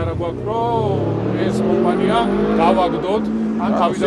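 A man talking in Georgian, with a steady low hum underneath.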